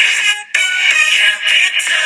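Capital radio station ID jingle music: a held, processed chord that cuts out just under half a second in, then after a brief gap the music comes back with a beat and sustained tones.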